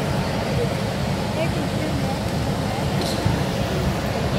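Background chatter of distant voices in a large indoor pool hall, over a steady low rumble.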